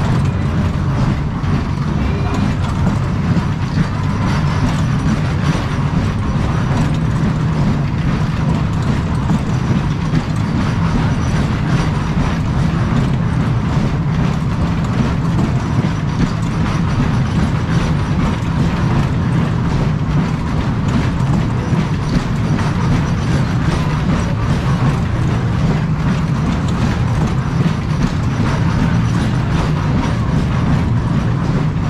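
A Heyn-built Berg- und Talbahn roundabout running, a steady rumble and clatter of its cars and gearing as they roll over the undulating track.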